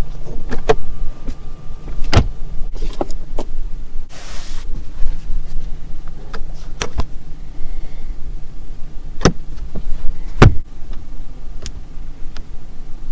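Sharp plastic clicks and knocks from car interior trim being handled, including the sun visor's vanity mirror cover, with about four louder clicks spread through and a short hiss about four seconds in. A steady low hum runs underneath.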